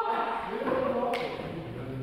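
Voices of people talking in the background, with a single sharp knock about a second in.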